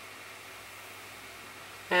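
Quiet room tone: a faint steady hiss with a low hum underneath and no distinct sounds in it.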